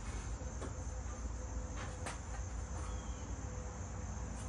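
Steady background chirring of insects, over a low hum. A few faint light clicks come as the metal shut-off plate is worked into the slot of the gravity-fed grill's charcoal chute.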